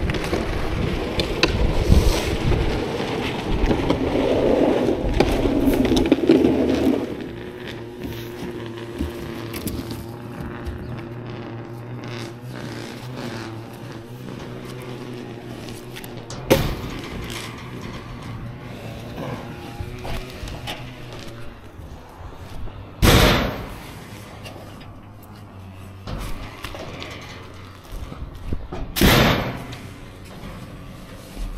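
Yard debris being dumped into a dump trailer: a loud rustling, scraping spill for the first several seconds, then sharp thuds of logs dropped in later on, twice loudly near the end. Background music with held notes runs underneath.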